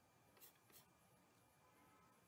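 Near silence, with two faint short scratches, about a third of a second apart, from a stylus drawing strokes on a tablet.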